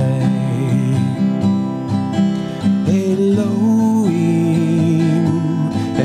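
A man singing long held notes with vibrato over a strummed acoustic guitar; a new sung phrase starts about halfway through.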